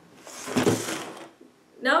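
A brief rush of noise, like a whoosh, swelling and fading within about a second, followed by a short quiet spell.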